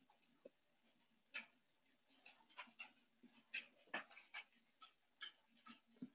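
Faint, irregular small clicks and ticks, about a dozen, coming more often after the first couple of seconds.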